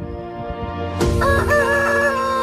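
A rooster crowing over background music: it starts about a second in with a few short rising-and-falling notes, then holds one long note.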